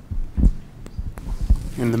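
Microphone handling noise as a handheld mic is passed to an audience member: a few dull low bumps, the loudest about half a second in and another about a second and a half in, with light clicks between them.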